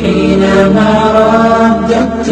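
Melodic vocal chanting of an Islamic nasheed, sung in long held, gently bending notes.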